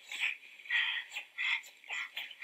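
Faint, indistinct speech in short snatches, thin and without low end.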